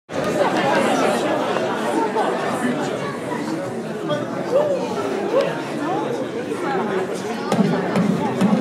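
Audience chatter in a hall: many people talking at once, with no single voice standing out.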